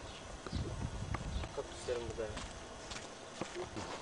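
Irregular soft footsteps and knocks on a path, with a brief faint voice in the distance a little before halfway.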